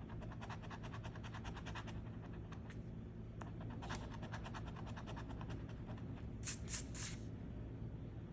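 A coin scratching the latex coating off a lottery scratch-off ticket in rapid back-and-forth strokes, with three short, louder sweeps near the end.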